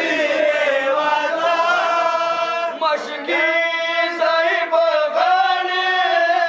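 Group of men chanting a noha, a Shia mourning lament, in unison into microphones, with long drawn-out held notes and slow falling glides between phrases.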